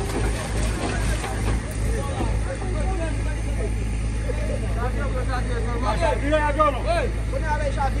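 Steady low drone of an engine-driven water pump running, with people's voices talking over it.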